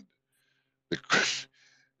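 A man's voice in a pause of speech: one short word about a second in, followed at once by a quick, audible breath drawn through the mouth.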